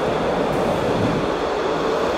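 Car-carrying shuttle train running through a rail tunnel: a steady, even rumbling noise heard from inside a car riding on one of its wagons.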